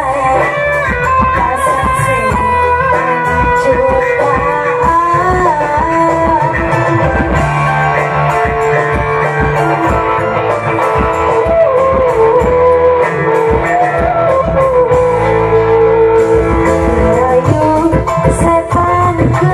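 Loud band music with a lead melody that bends and wavers in pitch, over a steady bass line and regular drumming. It is the music played for a burok lion-dance show.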